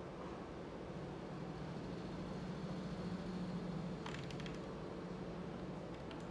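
Steady low machine hum, with a brief run of small quick clicks about four seconds in.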